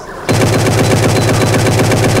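A long burst of automatic rifle fire from an AK-47-style rifle: a rapid, evenly spaced stream of shots starting about a quarter second in.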